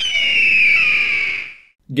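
A single shrill screech used as an edit sound effect, falling slightly in pitch and fading out after about a second and a half.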